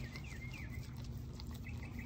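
Faint, quick bird chirps repeating in the background over a steady low hum.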